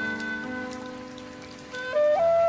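Chinese bamboo flute (dizi) music. A held flute note fades out in the first half, leaving sustained backing chords with a soft patter like rain, and the flute comes back in with a new phrase right at the end.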